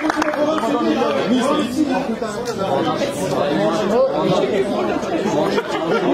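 Crowd chatter: many people talking at once, their voices overlapping without any one standing out.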